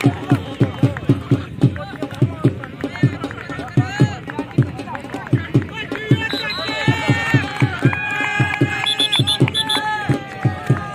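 A drum beating a steady rhythm of about three to four strokes a second, with a man's voice calling out over it and holding long drawn-out tones in the second half.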